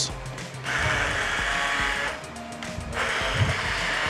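Hand-held immersion blender running in a jar, puréeing a nectarine vinaigrette. It runs in two bursts: one starting about a second in and lasting over a second, then a short pause, then it runs again from about three seconds.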